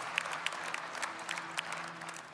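Congregation applauding, a haze of claps that thins out slightly toward the end.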